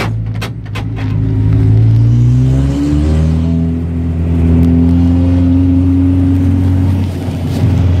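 Race car's engine heard from inside the cabin, revs climbing for nearly three seconds, then dropping suddenly at a gear change and holding fairly steady before easing off near the end.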